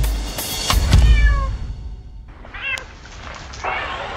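Kittens mewing, three short high mews spread across the few seconds, over a deep, low music hit that fades in the first second and a half.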